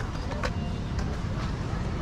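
Outdoor skatepark ambience: a steady low rumble with a few sharp clicks, the first near the start, then about half a second and a second in, and faint voices in the background.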